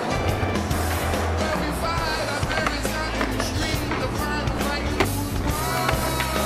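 Skateboard wheels rolling on a wooden mini ramp, with sharp clacks of the board and trucks, the loudest about five seconds in as the skater reaches the coping.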